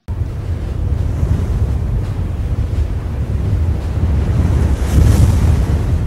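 A wind-like rumbling whoosh from an animated title-card sound effect, heaviest in the low end. It swells briefly about five seconds in, with a brighter hiss on top.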